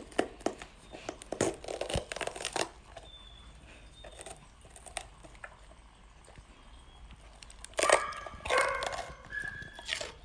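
A golden retriever biting and crunching into a raw green pepper: a quick run of crisp, wet crunches and tearing in the first few seconds, then quieter. A short burst of a voice, the loudest sound, comes about eight seconds in.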